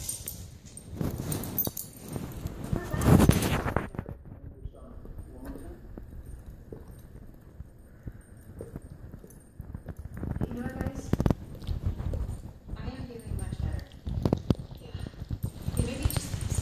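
Two dogs licking and mouthing at each other's faces: irregular wet licking and mouth-smacking sounds that come in bunches at the start and again in the last few seconds, with a quieter stretch between.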